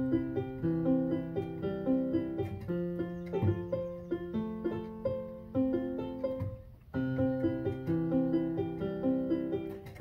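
Portable electronic keyboard played with both hands: a beginner practising the C, F and G chords, held low notes under changing upper notes in a repeating pattern. It breaks off briefly about seven seconds in, then starts the pattern again.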